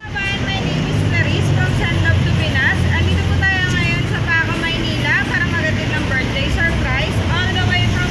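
A woman talking over a steady low rumble of street traffic.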